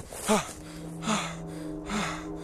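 A man's sharp, voiced gasp that falls in pitch, followed by two hard breaths about a second apart, over a low sustained music drone.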